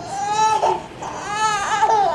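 Young infant crying: two high cries, a short one in the first half and a longer one that rises and breaks up near the end.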